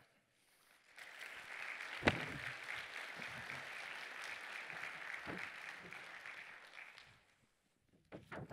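Audience applauding, starting about a second in and dying away after about six seconds, with a single thump about two seconds in.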